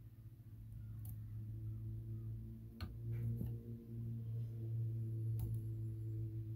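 A steady low hum that grows louder over the first couple of seconds and then holds, with a few faint clicks from a screwdriver turning the slot screw of a copper-pipe isolation valve.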